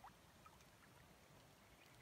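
Near silence: faint, steady background noise.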